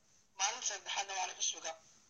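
Speech only: a man talking in a short run of words after a brief pause.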